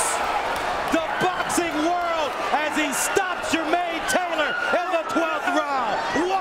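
Boxing-arena crowd shouting excitedly, many voices yelling over one another, with a few sharp smacks of punches landing.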